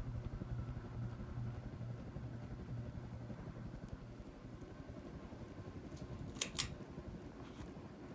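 A 1988 Codep Hugger ceiling fan running with a noisy motor. A low hum is strong for the first few seconds and then fades. Two sharp clicks come close together about six and a half seconds in.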